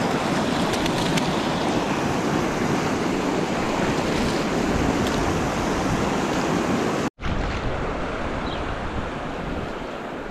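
Steady rush of river water pouring over a rock ledge into rapids. About seven seconds in the sound drops out for an instant, then carries on a little quieter.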